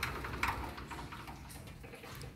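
A couple of soft clicks near the start, then faint room noise with a low hum.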